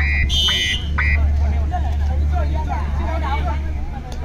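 A referee's whistle gives several short blasts in the first second, one of them higher and longer, over crowd chatter and a steady low hum.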